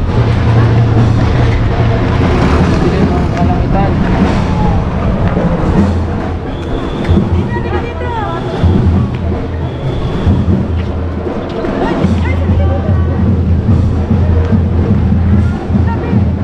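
Wind buffeting the camera microphone in a steady low rumble, with people's voices talking in the background.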